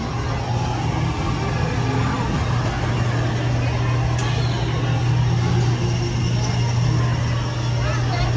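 Steady low hum of a dark-ride car rolling along its track, with people's voices in the background.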